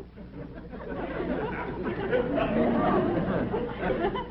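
Studio audience laughter: many voices mixed together, building up over the first couple of seconds and then holding steady.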